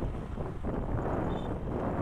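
Wind rushing over the microphone with the low, steady rumble of a motorcycle riding along at an even speed.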